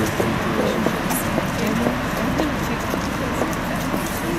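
Scattered chatter from a group of people outdoors over a steady background of street noise.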